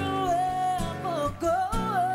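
Slow country-pop ballad performed live: a female voice holds long, wavering notes over band accompaniment with guitar.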